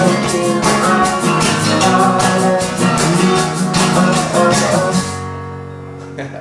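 Acoustic guitar playing with a hand shaker keeping a steady beat, about four shakes a second. The shaker stops about five seconds in, and the final chord rings out and fades.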